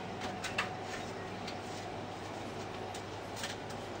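A steady low room hum with a few light clicks of small makeup items, bottles and pencils, being handled on a dressing table: a cluster of clicks near the start and two more near the end.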